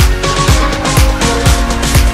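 Electronic background music with a steady beat of deep kick drums, about two a second.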